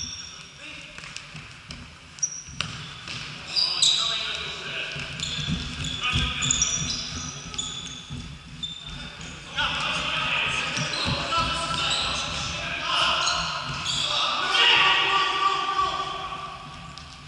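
Indoor futsal game echoing in a large sports hall: the ball thuds off feet and the floor, trainers squeak briefly on the court, and players call and shout across the hall. The shouting grows busier in the second half.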